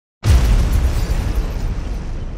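Cinematic explosion sound effect for a title animation: a sudden loud boom a moment in, followed by a deep rumble that slowly fades.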